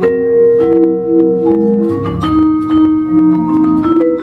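Vibraphone played with mallets in a slow jazz ballad: struck notes that ring on and overlap one another, a few new notes each second.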